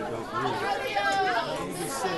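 Speech only: men's voices talking over crowd chatter, with one word at the start and overlapping, indistinct talk after it.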